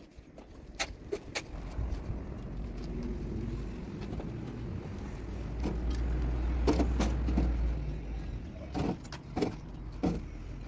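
A bricklayer's trowel knocking on fresh bricks, a few sharp taps scattered through. Under them a low rumble builds over several seconds and drops away near the end.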